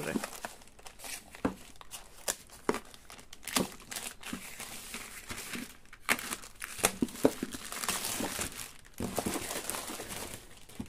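Plastic courier mailer bag crinkling and rustling as it is handled and slit open with a utility knife, with irregular sharp crackles and a longer stretch of continuous rustling in the middle.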